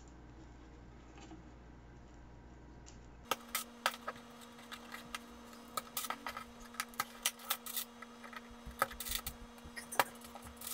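Thumb tacks clicking and clinking as they are picked out of a clear plastic box and pressed through fish skin into a wooden board. The first three seconds or so are faint room tone. Then comes a run of small sharp clicks over a low steady hum.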